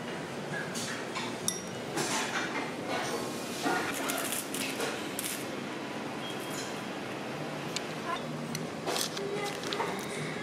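Chopsticks and tableware clinking against ceramic bowls, with rustling as a small packet of seasoned nori is opened. Under this runs a steady murmur of background voices.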